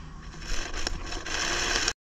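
Tomato plant leaves and stems rustling and scraping as ripe tomatoes are pulled off the vine, with a few light clicks; the sound cuts off suddenly near the end.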